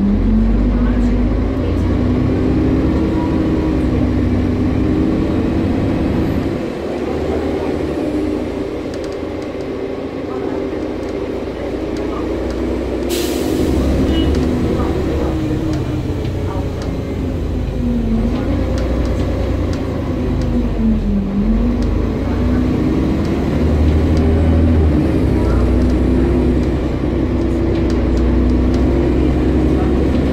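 A bus engine running while the bus is under way, heard from inside the passenger saloon: a low rumble with an engine note that rises and falls several times as it gathers speed and changes gear, dipping sharply about 21 seconds in. A brief hiss of air sounds about 13 seconds in.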